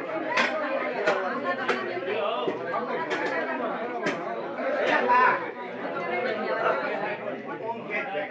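Many people talking at once in a room, with sharp knocks roughly once a second, mostly in the first half.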